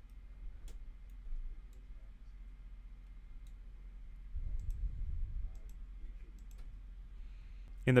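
Computer mouse clicking, a few faint, scattered clicks over a low steady hum, with a brief low rumble about halfway through.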